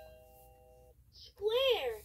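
VTech Touch & Teach Elephant toy playing electronic sounds: held notes of its tune fade out over the first second. After a short pause, a brief high voice-like sound rises and falls in pitch near the end.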